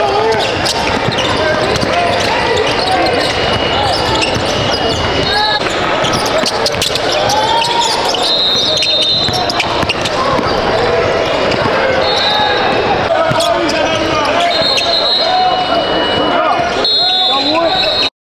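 Basketball game sound in a gym: many voices talking and calling out in a large hall, a basketball bouncing, and short high sneaker squeaks on the hardwood court. It all cuts off suddenly at the end.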